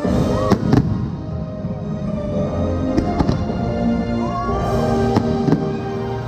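Aerial fireworks going off in a series of sharp bangs: a cluster near the start, more about three seconds in and again about five seconds in. The show's music plays steadily underneath from loudspeakers.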